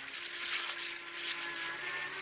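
Horses walking on dry ground, their hoofbeats blurred into a steady hiss, with a few faint held tones underneath.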